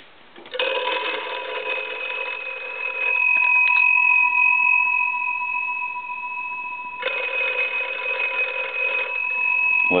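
Monarch wooden wall telephone's twin brass bell gongs ringing, struck by the clapper as a telephone analyzer sends ringing current: two rings of about two and a half seconds, a few seconds apart, with the gongs' tone hanging on between them.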